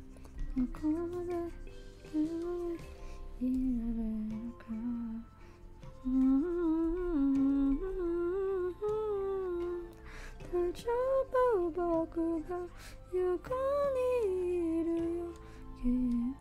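A woman humming a wordless tune in phrases that glide up and down, over soft background music.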